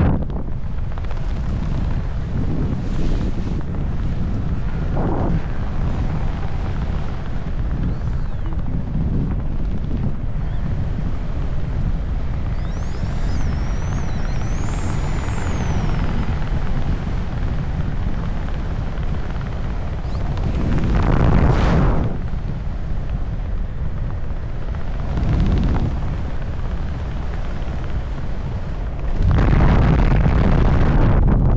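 Wind rushing over the camera's microphone under an open parachute canopy: a steady low rumble that swells louder about two-thirds of the way through, briefly again a few seconds later, and near the end. A faint wavering high whistle sits on top for a few seconds in the middle.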